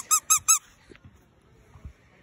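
Squeaker in a plush dog toy squeaked three times in quick succession near the start, each a short high-pitched squeak.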